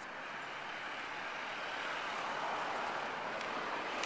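Town-centre road traffic noise, a vehicle's sound growing steadily louder as it approaches.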